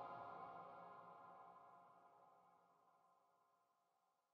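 The last held synthesizer chord of an electronic track, several steady tones fading away evenly until they die out near the end.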